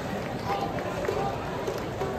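Indistinct voices of spectators in the ballpark stands over a steady murmur of crowd noise; no bat or ball impact is heard.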